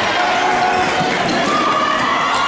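Handball bouncing on a wooden sports hall floor during play, with players' shouting voices, echoing through the large hall.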